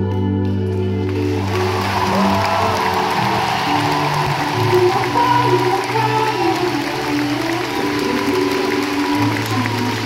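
A live band holds slow, sustained chords as the song closes, and from about a second in the crowd's cheering and applause swells over it.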